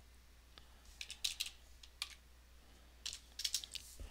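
Typing on a computer keyboard in short runs of keystrokes: a quick burst about a second in, a single stroke near two seconds, and another burst about three seconds in.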